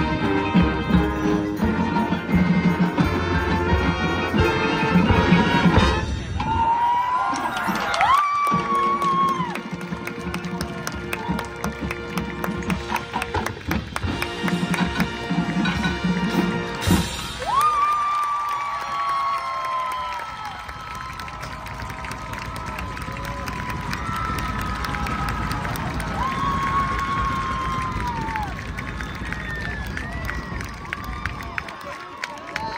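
High school marching band playing brass and drums, with strong drum hits, through the first half or so. In the second half a stadium crowd cheers and applauds, with long sliding whoops over the noise.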